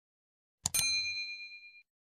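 Notification-bell sound effect: a short mouse click, then a bright bell ding that rings for about a second and fades away.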